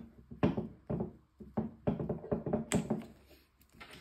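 Handling noise: a string of irregular short knocks and clicks as a MAP sensor is worked loose by hand from an EFI throttle body.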